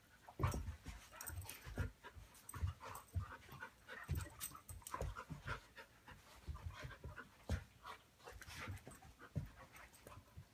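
Two dogs play-fighting, with heavy panting and a run of irregular short scuffles and thuds as they grapple.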